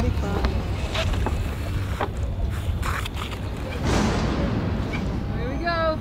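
Wind buffeting the microphone as a steady low rumble, with a few light clicks and knocks in the first few seconds and a brief rushing swell about four seconds in.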